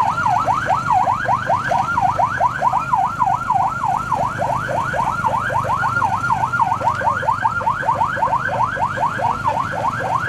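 Electronic vehicle siren sounding continuously, its tone sweeping up and down several times a second and switching between slower and faster sweep patterns.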